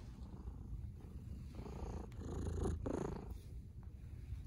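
Domestic cat purring steadily while being stroked by hand, swelling louder for about a second and a half past the middle.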